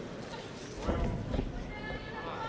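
Dull thuds from ground-and-pound strikes landing in an MMA bout, a cluster of three or four about a second in, over shouting voices.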